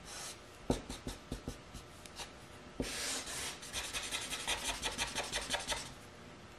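Felt-tip marker on paper: a few scattered strokes and taps, then quick back-and-forth colouring strokes in the last two seconds.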